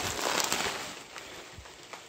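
Plastic bubble wrap crinkling and rustling as it is pulled out of a cardboard box, dying down about halfway through.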